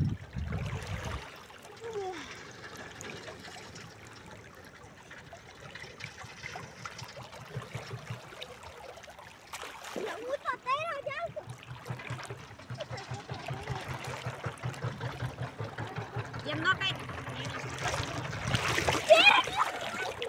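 Shallow river water running and trickling over the stony bed, with a few splashes. Voices call out faintly about ten seconds in and again near the end.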